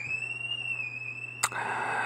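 A single high-pitched whistle-like tone that rises, then holds steady for about a second and a half before stopping with a click, followed by a short hiss near the end.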